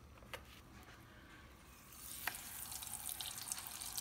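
Corn tortilla shell frying in hot avocado oil in a saucepan: a fine sizzle and crackle that comes in about halfway and grows louder, after a quiet start with one light click.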